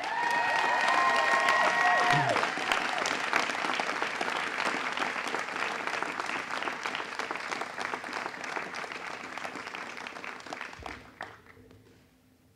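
Audience applauding a graduate as his name is called. A few held, high notes from the crowd ring over the clapping in the first two seconds, and the applause thins and fades out near the end.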